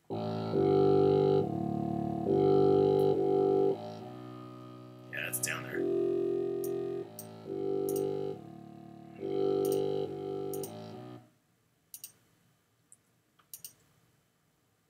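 Sampled contrabassoon patch in Reason's NN-XT sampler playing a phrase of long, low held notes that change about once a second, stopping about eleven seconds in. A few mouse clicks follow.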